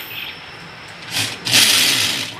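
Cordless drill boring into a rendered masonry wall in two bursts: a short one just over a second in, then a longer, louder one near the end.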